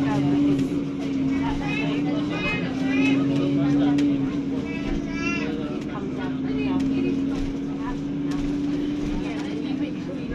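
Interior of a 2012 Alexander Dennis Enviro400 double-decker bus under way: a steady engine and driveline drone that shifts slightly in pitch a few times. Passengers' voices, including a high-pitched one, sound over it.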